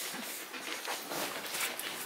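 Faint rustling and small irregular knocks of people moving about and handling things, with no clear single source.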